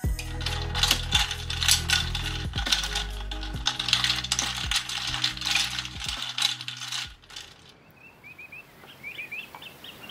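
Ice cubes clinking against a glass carafe as a long stirrer turns them, a quick, irregular run of clinks for about seven seconds. The clinking then cuts off and small birds chirp toward the end.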